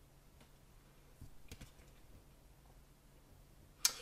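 Trading cards handled in the hands, mostly quiet: a few faint clicks about a second and a half in as a card is turned over on the stack, then one sharper click near the end.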